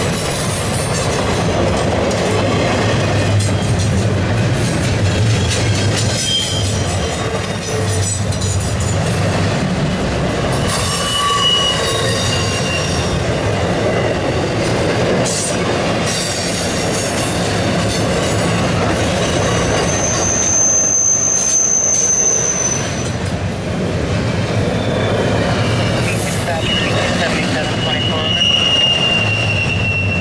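Intermodal freight cars (trailers on flatcars and double-stack well cars) rolling past: a steady rumble of steel wheels on the rails, with high wheel squeals coming and going. The longest squeal holds steady from about 20 to 23 seconds in, and another runs from about 26 seconds to the end.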